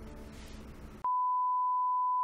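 Quiet background music, cut off about a second in by a loud, steady, single-pitched beep: the test tone that goes with TV colour bars, used as a "technical difficulties" gag.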